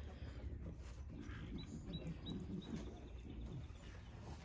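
Faint, irregular munching of a Jersey calf eating grain from a feed pan, with three short, high chirps about two seconds in.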